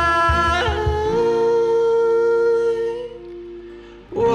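Acoustic band of two steel-string guitars, cajon and a male singer. The cajon beats and guitar chords stop about a second in, leaving one long held vocal note that fades away near the end.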